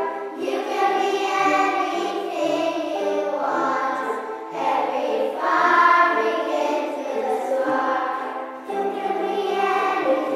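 Children's choir singing, accompanied by ukuleles and wooden Orff xylophones played with mallets, with a low bass line moving every second or so beneath the voices.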